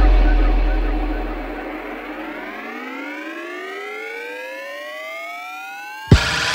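Electronic dance music break: a deep sub-bass boom fades away over the first two to three seconds while a synth riser climbs steadily in pitch, building toward the drop.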